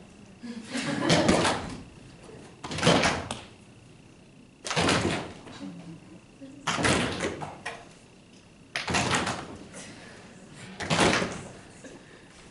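A roomful of people slapping their hands on tables in unison, six times about two seconds apart. Each slap is the group's response to a word shown in a 2-back working-memory task, made with the left or the right hand.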